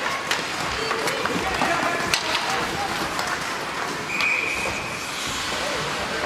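Youth ice hockey play in a rink: sharp clacks of sticks and puck and the scrape of skates over indistinct spectator voices. A short, steady high whistle sounds about four seconds in, the referee stopping play.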